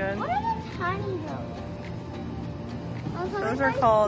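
Short high-pitched vocal calls that rise and fall in pitch: a few in the first second, then a louder cluster near the end.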